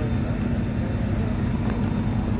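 A vehicle engine idling nearby: a steady low hum and rumble.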